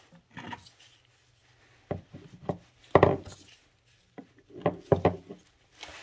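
Bushings and metal sleeves being pushed into a Cobb short shifter arm by hand, making a scattering of light knocks and clicks, the loudest about three seconds in.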